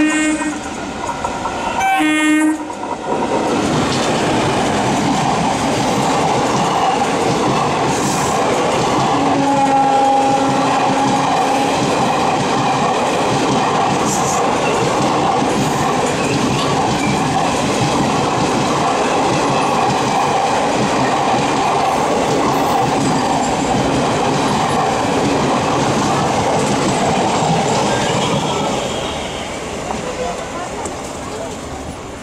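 Two short train-horn blasts as an oncoming electric-hauled express meets, then the loud, steady rush and wheel clatter of its coaches passing close by on the adjacent track. The noise eases near the end. A lower, steady horn note sounds for a couple of seconds about ten seconds in.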